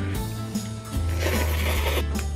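Instant noodles being slurped off a fork: a noisy sucking starts about a second in and lasts nearly a second, over background music.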